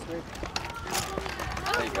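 Footsteps of several people walking on paving slabs, irregular and uneven, with brief snatches of conversation among them.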